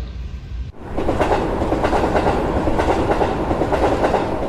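A railway train running along the track: a steady rolling noise that starts suddenly about a second in.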